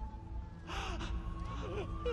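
A man's sudden anguished gasp about two-thirds of a second in, breaking into short sobbing cries, over a steady, sustained music score.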